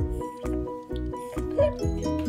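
Background music with a steady pulsing beat and held notes.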